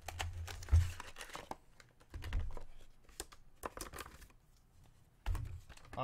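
A knife cutting and tearing open a glued plastic blister package, with the plastic crinkling and scratching and a few dull handling thumps.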